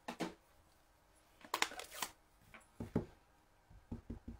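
Sharp plastic clicks of an ink pad case being handled and opened, then a few dull taps near the end as a clear acrylic stamp block is pressed onto the ink pad to ink the stamp.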